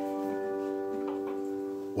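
Resonator guitar's last strummed chord ringing out and slowly fading, the final chord of the song.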